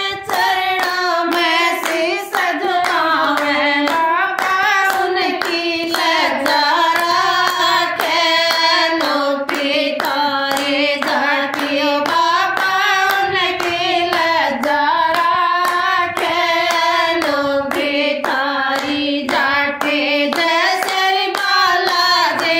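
A group of women singing a Hindi devotional bhajan together without instruments, keeping time with steady rhythmic hand claps.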